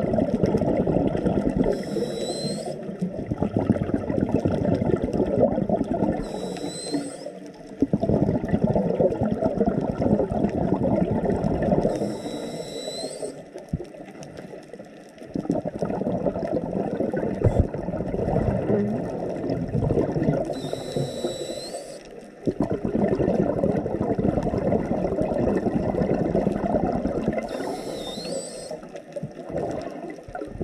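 A scuba diver breathing through a regulator underwater, five breaths in all. Each is a short hissing inhalation with a faint rising whistle, followed by a long, loud rush of exhaled bubbles.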